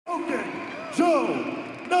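Arena ring announcer's amplified voice echoing through the hall during fighter introductions, drawn out and gliding in pitch, louder from about a second in.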